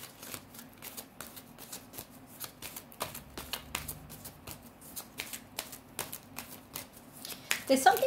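A deck of oracle cards being shuffled by hand: a quick, irregular run of soft card clicks and slaps.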